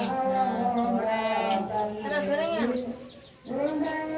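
Chickens clucking and cheeping in many short, pitched calls, with a brief lull about three seconds in.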